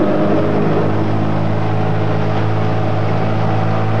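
Motorboat engine running steadily under way, a loud, even drone heard from aboard the boat.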